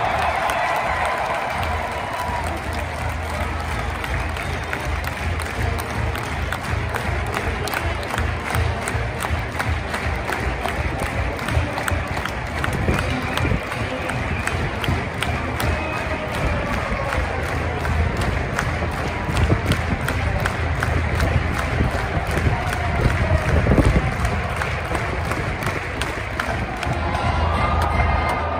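College marching band playing with a steady drum beat and strong bass drums, over a large stadium crowd cheering.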